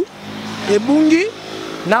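A car driving past on the street, its engine and tyre noise swelling through the first second and a half with a rising engine pitch, before a man's voice resumes near the end.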